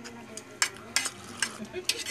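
A few short slurping sips of hot coffee from a ceramic mug.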